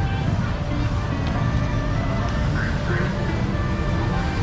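Busy street ambience: a steady rumble of vehicle traffic, with music playing and people talking around.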